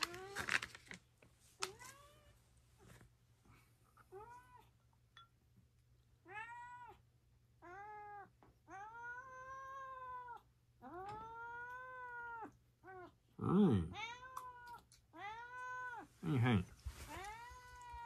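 A domestic cat meowing over and over: a few faint meows at first, then a run of rising-and-falling meows, some short and a couple drawn out to over a second, coming closer together toward the end. The meowing is a cat asking for its food while it is being prepared.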